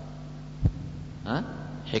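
Steady electrical mains hum under a man's voice, which sounds one short syllable just past the middle. A single low thump comes a little over half a second in.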